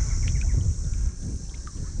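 Wind buffeting the microphone in a low, uneven rumble, with light sloshing of shallow creek water as hands move through it, over a steady high hiss.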